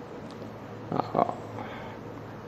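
Quiet hall room tone in a pause between a speaker's sentences, broken about a second in by two short, faint sounds close together.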